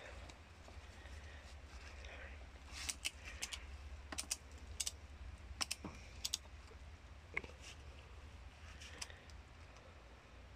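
Ratchet strap being worked tight: its ratchet gives sharp clicks, a quick cluster about three seconds in, then single clicks or pairs every second or so.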